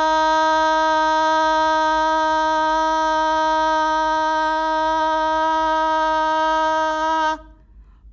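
A woman holding a loud, steady 'ah' on one pitch that stops about seven seconds in: a sustained-vowel voice exercise for volume, breath support and respiratory drive.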